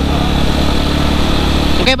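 Yamaha WR155R's single-cylinder engine running at a steady cruise under a steady rush of wind and road noise.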